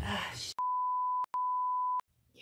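Edited-in censor bleep: a steady high beep tone starts about half a second in and runs in two stretches with a brief break between, while the rest of the audio is cut to dead silence. A short noise at the start fades out just before it.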